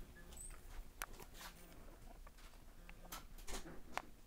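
Faint handling noise as the plastic light-up sign is moved and set in place: a few light clicks and taps, with a sharp click about a second in and several more near the end, over a low steady hum.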